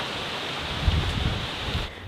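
Steady rushing of wind through tree leaves, with a low rumble of wind on the microphone about a second in.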